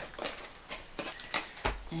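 Handling noises from packing a diamond painting kit away: several light clicks and rustles of packaging, then a low thump near the end.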